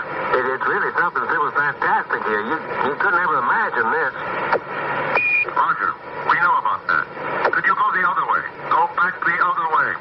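Garbled two-way radio voice chatter, narrow-band and crackly, with a short high beep about halfway through.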